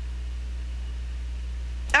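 A steady low hum with no other sound, until a woman's voice starts right at the end.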